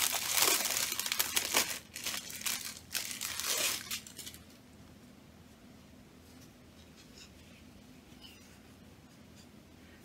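Crinkling and rustling of a folded piece of stiff cross-stitch fabric being handled and unfolded, for about the first four seconds, after which it goes quiet.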